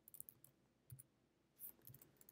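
Faint, irregular keystrokes on a computer keyboard as a word is typed.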